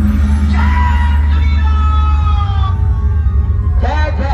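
Live dhumal band music played loud: an electronic keyboard holds long lead notes that slide slightly in pitch, over a heavy, steady bass. A new, busier phrase starts near the end.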